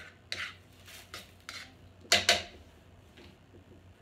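Kitchen clatter: a string of short, irregular knocks and clinks of utensils and cookware being handled, the loudest about two seconds in.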